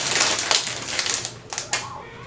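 Foil-lined plastic candy bag crinkling as it is handled and held open, a dense run of crackles loudest in the first second and easing off after.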